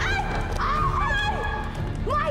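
Several women shrieking in alarm, overlapping cries that rise and fall in pitch.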